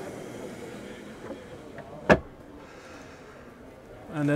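A camper van's pull-out furniture drawer being handled and shut, with one sharp knock about two seconds in, over a steady background hum.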